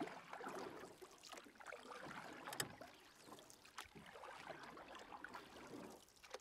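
Faint river water, lapping and splashing irregularly, with a sharper click near the middle.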